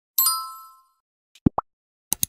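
Edited sound effects: a bright chime that rings and fades over about half a second, then, about a second later, two quick rising bloops like a phone notification popping up.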